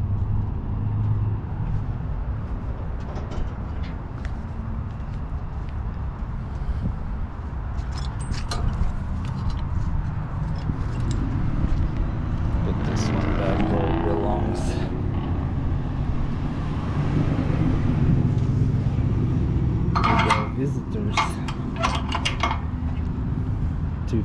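Steady low rumble of an idling semi-truck diesel engine, with a cluster of sharp metallic clanks near the end.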